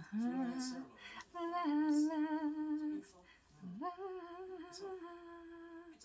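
Wordless female vocal singing 'la la' in a slow melody of long, slightly wavering notes: the TV score's signature 'la la' theme. The singing breaks off briefly about three seconds in, then resumes.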